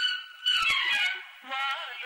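Telugu film-song soundtrack music: held high melody lines, a falling run about half a second in, and wavering pitched lines building near the end.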